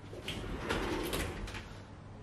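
A wooden sliding wardrobe door rolling open on its track, a low rumble with light clicks lasting about a second and a half.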